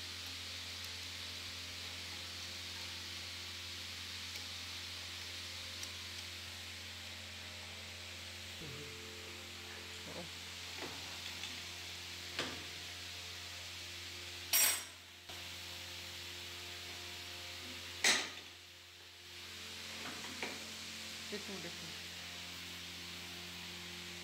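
Metal parts and tools clinking during assembly of a paper cutting machine, with two sharp, louder metal clanks about 14 and 18 seconds in, over a steady workshop hum.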